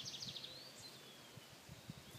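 Faint birds chirping: a quick high trill that stops about half a second in, then a few thin, high chirps, with a few soft low bumps of footsteps or phone handling.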